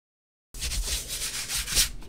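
A hand brushing quickly back and forth across cold-press watercolor paper in repeated rubbing strokes, sweeping off crumbs of lifted masking fluid. The sound starts abruptly about half a second in.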